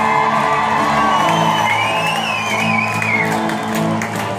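Live rock band playing loudly through a concert PA, with guitar, heard from among the audience in a large hall. The crowd cheers and whoops over the music.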